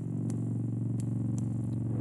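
A steady low machine hum, with a few faint clicks.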